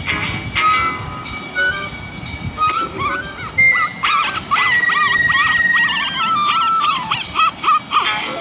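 Cartoon soundtrack: music with a quick string of short, high dog-like yips and whimpers starting a few seconds in, with one long held note among them near the middle.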